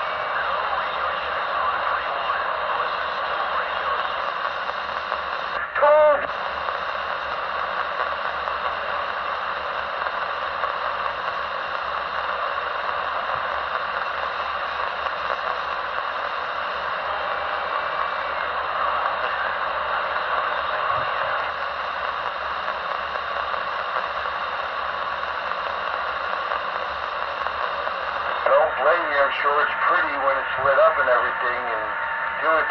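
CB radio receiver hiss and static, a steady band of noise, with a short loud warbling tone about six seconds in. A voice starts to come through the static near the end.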